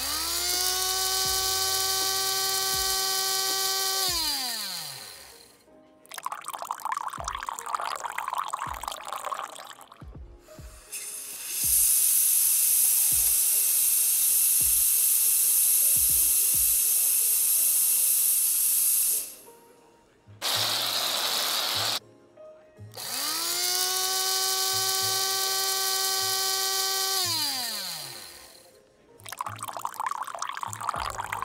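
Espresso machine and grinder at work making lattes. A grinder motor whines up to speed, runs steadily and winds down, with knocking and clatter after it. Then comes a long loud steam-wand hiss frothing milk and a short burst of hiss, and the grinder spins up and down a second time.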